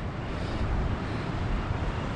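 Steady rumbling wind noise on the microphone, with no distinct events.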